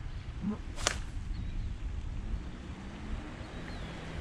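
A fishing rod whipped through the air on a cast, one short sharp swish about a second in, over a steady low rumble of wind on the microphone.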